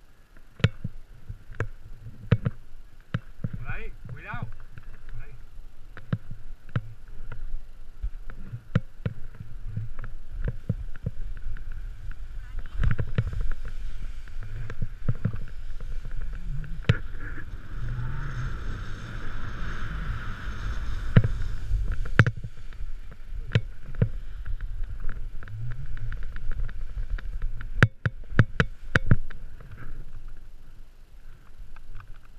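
Snowboard riding through snow: a steady rumble and hiss of the board sliding and carving, with wind on the camera's microphone and many sharp knocks from the board and camera mount. The sound starts up suddenly at the beginning and is densest from about 12 to 22 seconds in.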